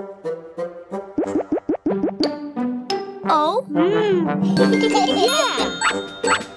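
Children's cartoon song music in a break between sung lines, with springy boing-like pitch glides about a second in and again around three to four seconds, and a tinkling chime near the end.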